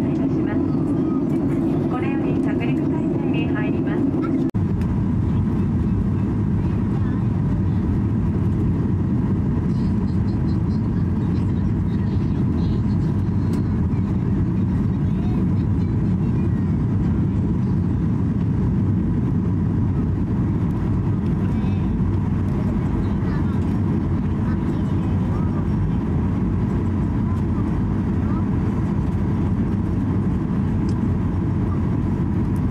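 Steady low rush of engine and airflow noise inside the cabin of a Boeing 737-800 airliner descending on its approach to land, with a short break in the sound about four and a half seconds in.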